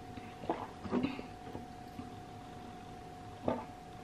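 Drinking and glass handling: a few short clinks and knocks of a small glass bottle and a drinking glass, together with swallowing. They come about half a second in, about a second in and again near the end, over a steady faint hum.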